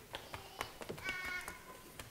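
A small child's brief high-pitched vocal sound, about half a second long, about a second in, over scattered faint clicks and rustles.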